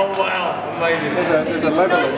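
Speech only: people talking, with a man's voice among them.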